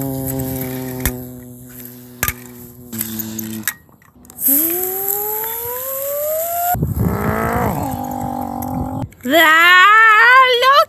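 A voice making race-car engine noises: a long steady drone, then a smoothly rising rev, then a rough rasping stretch, with a wavering cry starting near the end. Two sharp clicks come in the first few seconds.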